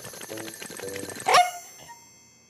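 Cartoon sound effect of a dog shaking water off its fur, a fast rattling, then a short loud rising yelp from the dog about a second and a half in.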